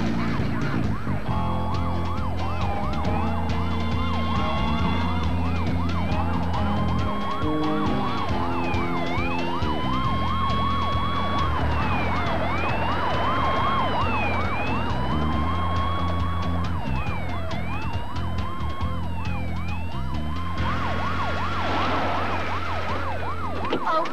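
Police car sirens wailing, each tone climbing and then dropping about every two seconds, with several sirens overlapping out of step. A low, steady music score sounds under them, and the sirens fade out near the end.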